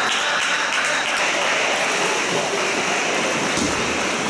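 Spectators applauding steadily after a point.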